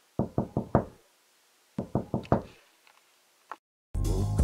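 Knocking on a door: two quick runs of four knocks about a second and a half apart, then one faint tap near the end.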